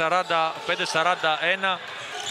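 Speech only: a man commenting in Greek on the game, calling out the score.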